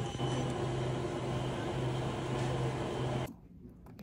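Café interior noise: a steady low machine hum under a general haze of room noise. About three seconds in it cuts off abruptly to a much quieter room with faint small handling clicks.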